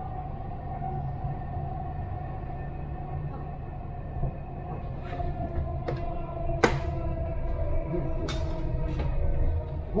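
Interior noise of a driverless Dubai Metro train running along an elevated line: a steady low rumble with a sustained whine over it. In the second half, a handful of sharp clicks and knocks break in, the loudest around two-thirds of the way through.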